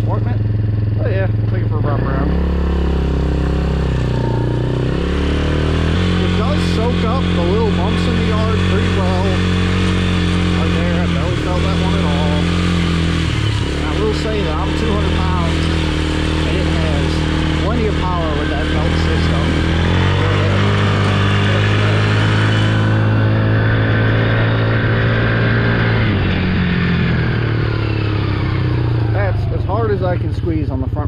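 The small engine of a Can-Am Renegade 110 youth ATV running under way. Its pitch steps up and down several times as the throttle is opened and eased off. A steady hiss lies over it for most of the first twenty-odd seconds.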